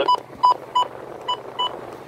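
Weather radio receiver giving short beeps as its buttons are pressed while it is switched between channels: five brief, high, identical beeps in under two seconds.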